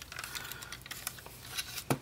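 Small plastic clicks and rattles from a G1 Headmaster Hardhead Transformers toy being handled and folded at its hinges, with a sharper click near the end.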